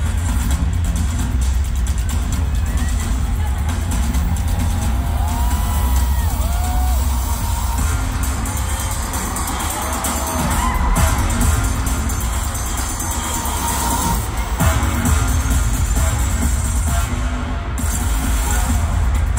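Loud concert music over a venue PA with a heavy, steady bass, recorded from the audience, with scattered shouts and cheers from the crowd.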